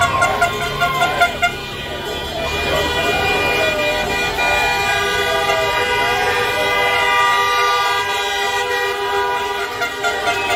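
Car horns honking in long, overlapping held blasts as cars drive slowly past, with crowd voices. There are a few sharper shouts in the first second or so.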